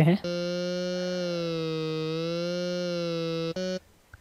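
Native Instruments Massive software synthesizer holding one buzzy note on its 'Speech' wavetable oscillator. The pitch dips slightly and returns while the oscillator's pitch control is moved. A brief retriggered note near the end cuts off suddenly.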